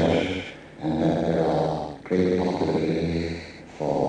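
A man's recorded speaking voice, processed so the words dissolve into drawn-out, chant-like vocal tones. They come in stretches of a second or so, with brief dips in between.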